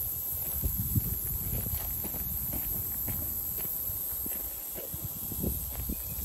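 Footsteps on loose stony red dirt, walking at a steady pace, each step a soft crunching thud.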